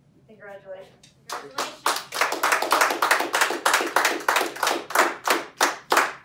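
A few people clapping their hands in applause, a run of brisk, even claps starting about a second in.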